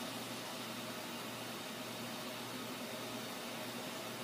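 Steady hiss of room tone with a faint low hum; nothing else happens.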